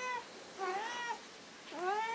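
Domestic cat meowing repeatedly: the end of one call at the start, a full meow about half a second in, and another starting near the end, each rising in pitch.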